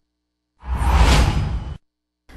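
Whoosh sound effect for a TV news logo bumper, lasting about a second with a deep low end, cut off sharply.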